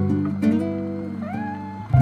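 Slow acoustic guitar music, plucked notes ringing out and fading. Just past halfway comes a brief rising, gliding note.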